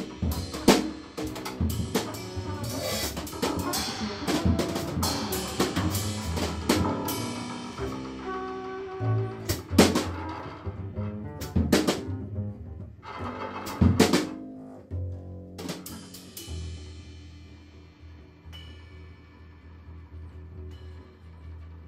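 Live improvised jazz: a drum kit played with sticks, scattered sharp snare, rim and cymbal strikes over plucked double bass notes. The drum strikes stop about three-quarters of the way through, leaving the bass and a fading cymbal ring, quieter.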